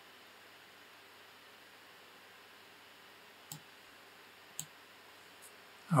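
Two computer mouse clicks about a second apart, then a fainter third, over a quiet steady hiss.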